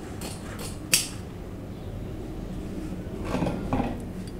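Large fabric shears snipping through draping fabric: several quick cuts in the first second, the last a sharp click of the blades closing. A few softer handling sounds follow near the end.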